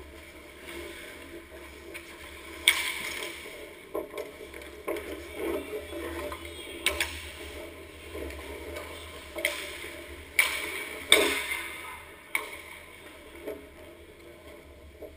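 Ice hockey play: skate blades scraping and carving on the ice throughout, with several sharp clacks of sticks or the puck. The loudest clacks come about three seconds in and late on, about eleven seconds in.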